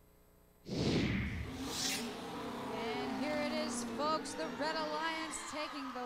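Broadcast transition effect: after near silence, a loud falling whoosh comes in suddenly, a second rising whoosh follows about a second later, then a busy run of pitched, swooping voice-like tones.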